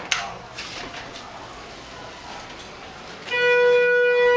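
A click as the elevator's up call button is pressed. A little over three seconds in, the Schindler hydraulic elevator sounds a steady electronic signal tone, loud and held for over a second.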